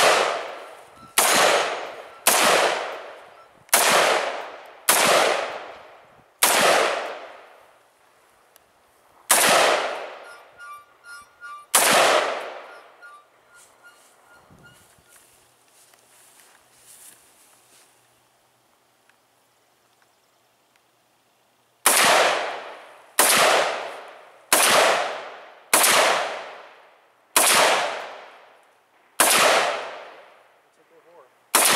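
Rifle shots fired one at a time, about one every second and a half: a string of eight, then a lull of about ten seconds in which struck steel targets ring and fade, then another string of seven shots.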